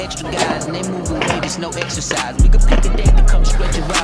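Skateboard wheels rolling on concrete under a hip-hop track, with two deep bass hits in the second half.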